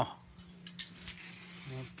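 Quiet room with a faint hiss, two brief faint clicks about a second in, and a short voice sound near the end.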